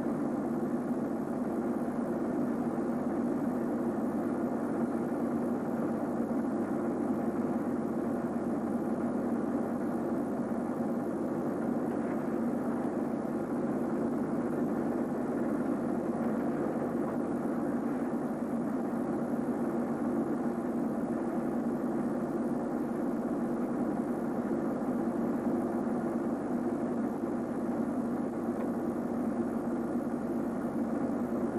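A steady, unchanging low rumbling noise with no events in it.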